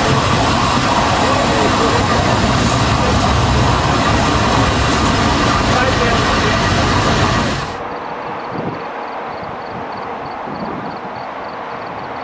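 Santa Fe 3751 steam locomotive blowing off steam beside its driving wheels: a loud, steady rushing hiss. About two thirds of the way through it cuts off abruptly to a much quieter background with a faint, regular high ticking, about three a second.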